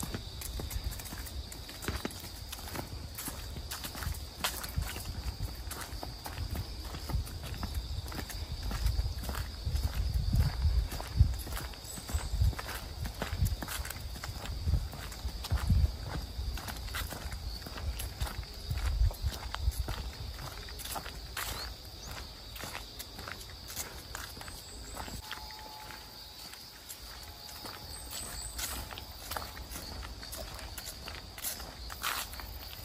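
Footsteps walking along a leaf-strewn forest path, a steady run of short shoe steps, with low rumbles partway through.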